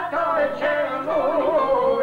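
A man singing an Albanian folk song, with a wavering, ornamented turn about halfway through that settles into a long held note, over violin and çifteli accompaniment.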